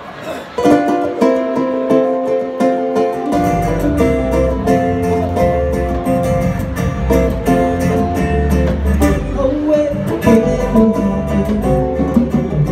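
Live band starting a song: ukulele and acoustic guitar strummed with hand percussion and cymbal, and low bass notes joining about three seconds in.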